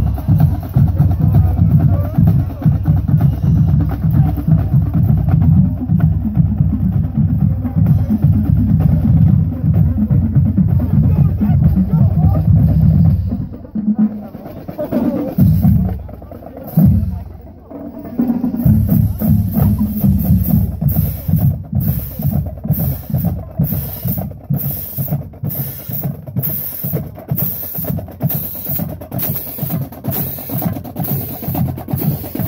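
Marching-band drumline (snare, tenor and bass drums) playing a parade cadence. About halfway through the playing thins to a few scattered hits for several seconds, then it picks up again with a steady beat and sharp, evenly spaced accents.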